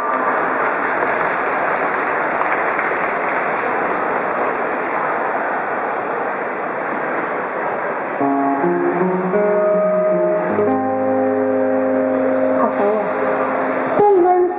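A steady noisy hiss for about the first eight seconds, then an acoustic guitar starts a song's intro, its chords ringing out in held notes.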